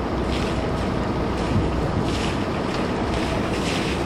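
Outdoor wind noise buffeting the microphone, a steady low rumble with faint gusty hiss above it.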